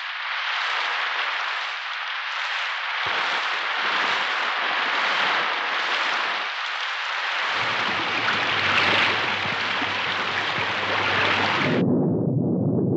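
Storm sound: a steady, loud rush of wind and rain, joined by a low rumble about seven and a half seconds in.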